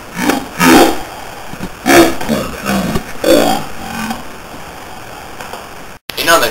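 A boy's voice making several short, unclear vocal sounds over the first four seconds, loudest near the first and second seconds, with no clear words.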